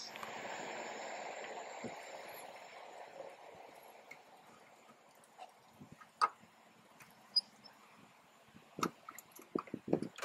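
A faint hiss fades out over the first few seconds, then come scattered light clicks and taps as hands handle the plastic trim and the rear access cap behind a 2017 Chevy Impala's headlight housing. The clicks grow more frequent near the end.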